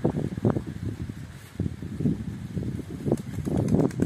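Wind rumbling on the microphone in uneven gusts, with a few sharper thumps.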